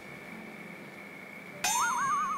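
Quiet background music, then near the end a sudden louder warbling tone that wavers rapidly up and down.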